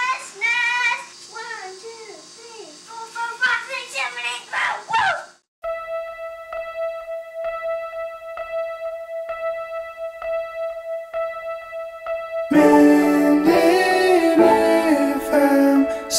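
A young child's voice speaking and singing for about five seconds, cut off suddenly. Then a single steady held tone with soft ticks a little under once a second, until music with singing comes in about three-quarters of the way through.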